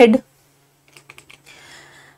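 Four or five light clicks in quick succession about a second in, then a faint hiss, over a low steady hum.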